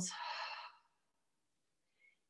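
A woman's big audible exhale, a breathy sigh that fades away within the first second.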